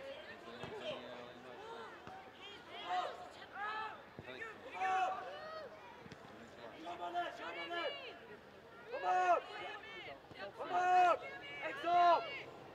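Voices shouting short calls across a football pitch during play, several separate shouts every second or two, the loudest about nine and eleven seconds in.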